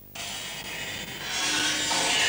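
A film's opening logo sound: a rushing, hissing noise that cuts in suddenly just after the start and swells louder about a second and a half in.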